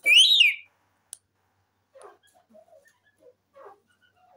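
Indian ringneck parakeet giving one short, loud whistled call that rises and then falls in pitch. A single click follows about a second in, then only faint, soft low sounds.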